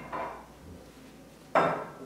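Carrots and hands knocking against a glass mixing bowl and a ceramic plate as the carrots are dried with paper towel: a soft knock at the start, then a louder clink about one and a half seconds in that rings briefly.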